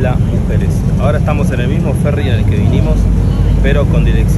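A man talking over the steady low rumble of a passenger boat under way, with wind buffeting the microphone. The low rumble grows heavier about three seconds in.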